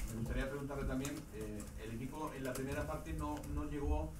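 A man's voice speaking, a reporter beginning a question in Spanish; speech only.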